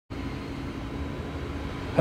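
A steady low background hum with a faint even hiss over it.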